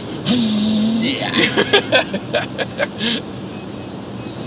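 A man's voice making a held, hissing mock sound effect for about a second, then laughter, over the steady road noise inside a moving car.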